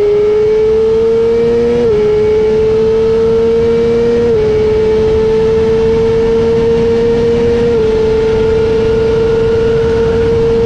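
Sport motorcycle engine pulling hard at high revs, its pitch climbing slowly and dropping at each of three upshifts, over a steady rush of wind noise.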